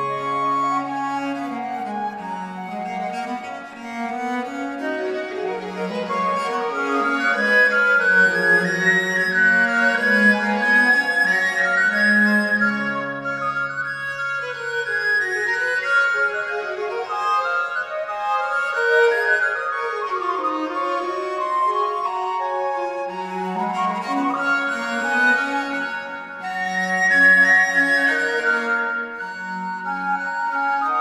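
Baroque chamber ensemble on period instruments playing an early 17th-century piece: recorder and flute melodies over baroque violin, two viols and harpsichord. The interweaving melodic lines run over a moving bass line.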